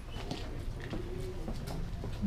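Quiet bar room background: a faint murmur of distant voices with a few soft clicks.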